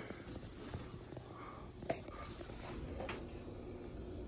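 Faint handling noise, soft rubbing with two light taps about two and three seconds in.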